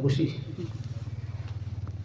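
A man's voice trails off, leaving a low, steady, engine-like hum with a fast, even pulse.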